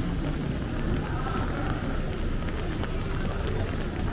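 Street ambience: footsteps on wet pavement and passers-by talking, over a steady low rumble.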